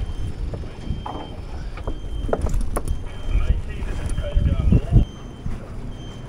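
Low steady rumble of a boat motor running at idle, with two sharp knocks a couple of seconds in and faint voices in the background.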